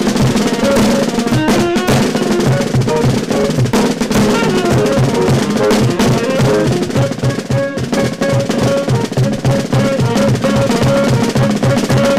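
A small jazz-punk band playing live, instrumental for the moment: drum kit, bass guitar, electric guitar and saxophone. A steady, driving low bass pulse runs under sustained horn and guitar notes and busy drumming.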